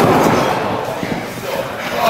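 A wrestler's body hitting the ring with a loud thud right at the start, followed by voices.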